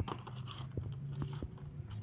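Light crinkling and small clicks of clear plastic packaging being handled, as a crimping tool in its blister pack is picked up, over a low steady hum.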